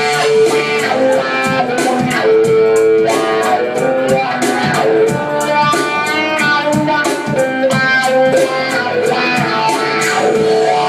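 Acoustic guitar strummed in a steady, even rhythm through the PA: an instrumental passage of a live solo song, with no vocals.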